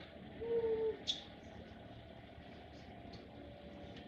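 Distant yard work outside, a steady low drone of powered garden equipment, heard faintly through the room. About half a second in, a short hummed 'mm' from a voice, followed by a brief light tick.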